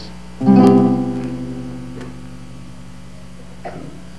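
A single chord strummed on an acoustic guitar about half a second in, ringing out and slowly fading over the next two seconds.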